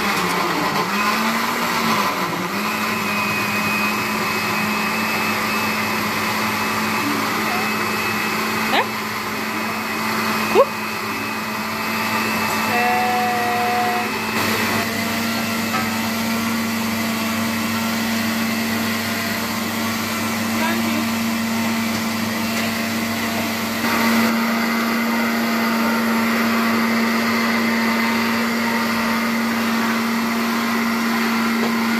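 Electric countertop blender motor running steadily while blending, its pitch holding even and growing a little louder about 24 seconds in. Two short knocks are heard around nine and eleven seconds in.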